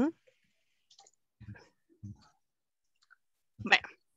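A short 'uh-huh' right at the start, then a lull broken by a few faint clicks and soft murmurs, and a brief voice sound near the end.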